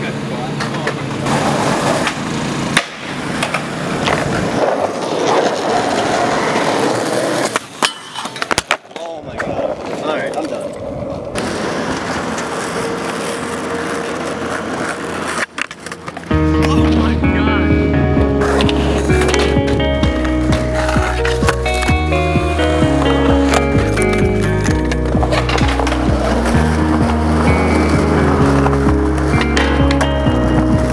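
Skateboard wheels rolling on concrete, broken by a few sharp board clacks and landings. About halfway through, music with a heavy stepping bass line starts and takes over.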